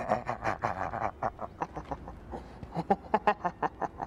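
A person's voice making rapid, staccato cackling sounds, about seven a second at first, then sparser and choppier.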